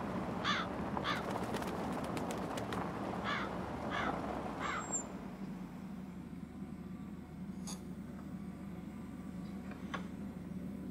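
A crow cawing five times, two calls and then three, over a low steady rumble. The rumble fades about halfway through, leaving a faint hum.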